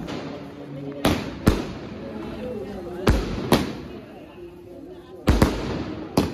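Firecrackers going off: six sharp bangs in three close pairs, about two seconds apart, with faint voices between them.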